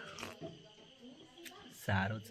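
A man sipping a drink from an aluminium cup, with a voice starting near the end.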